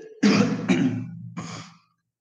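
A person clearing their throat in a few rough, voiced bursts over about a second and a half.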